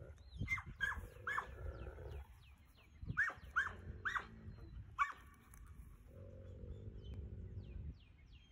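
Wolf dogs giving short, high whining yips in clusters, with low growling rumbles early on and again over the last two seconds.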